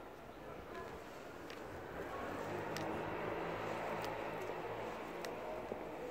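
Street background noise that swells for a few seconds in the middle with a low engine hum, as of a vehicle passing, with a few sharp ticks about a second apart.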